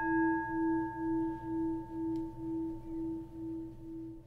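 A struck meditation bell of the singing-bowl kind rings out, one sustained tone with higher overtones that wavers evenly about twice a second as it slowly fades.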